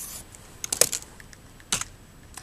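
A few sharp key clicks: a quick cluster, the loudest, a little under a second in, and one more click near the end, from a computer's arrow key being pressed to advance the PowerPoint slide.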